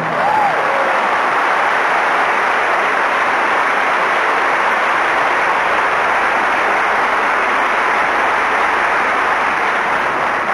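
A very large outdoor audience applauding steadily at the end of an operatic song, with one short call rising and falling out of the crowd about half a second in.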